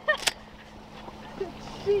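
A brief voice and a single sharp click just after the start. Then a quiet stretch with a steady low hum from the boat's motor, with no gunshot.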